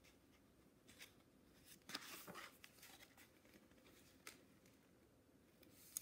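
Faint paper rustles and swishes of a picture book's page being turned by hand, a few soft strokes with the loudest about two seconds in.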